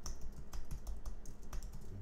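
Typing on a computer keyboard: a quick, irregular run of key clicks over a low steady hum.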